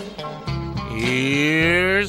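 Upbeat show-intro music. About a second in, a cow's moo sound effect comes in over it, rising steadily in pitch.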